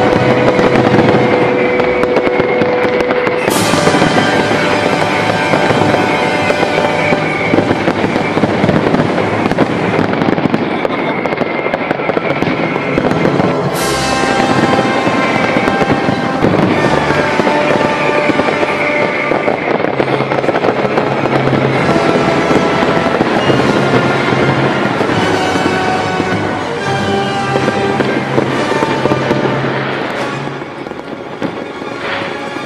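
A fireworks display, its shells bursting and crackling, heard together with music that plays throughout. Two sharp, bright bursts stand out, a few seconds in and again about fourteen seconds in.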